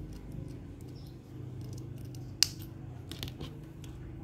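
Small spring-loaded thread snips cutting ribbon: a few sharp clicks, the loudest about two and a half seconds in.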